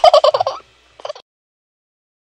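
Cartoon baby giggling: a quick run of short chuckling pulses for about half a second, then a brief second burst about a second in.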